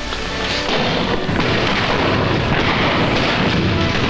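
Music over a dense din of battle sound effects, with booms and gunshots.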